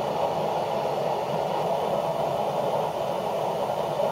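Steady noise of a fan-assisted Boilex Ultraclean 1 stove running with its fan at maximum, methyl ester fuel blocks burning at full power under a large pot of water at the point of boiling.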